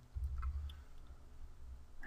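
A few faint computer mouse clicks, about half a second to a second in, over a low rumble.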